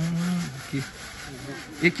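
Sand being sifted by hand: a wood-framed wire-mesh screen shaken back and forth over a wheelbarrow, grit falling through, with a steady scraping rub.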